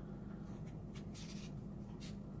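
Kitchen knife cutting through a fresh cucumber: a few short crisp scraping strokes about half a second in, then a longer slicing stroke just after a second, over a steady low hum.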